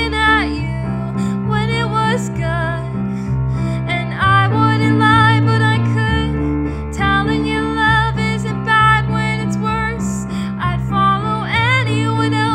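A young woman singing a slow, tender original song in long held notes with vibrato, over an accompaniment of sustained low chords that change every second or two.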